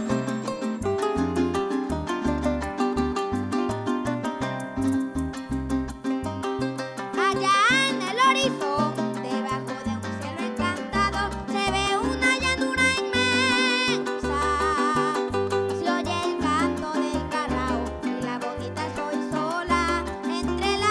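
Venezuelan llanero music from a conjunto llanero: the arpa llanera leads with fast plucked runs over a strummed cuatro, maracas and a steady, bouncing bass line. A sliding, wavering voice-like line joins about seven seconds in.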